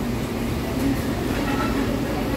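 Steady low rumble of a fast-food restaurant's room noise, with faint, indistinct voices.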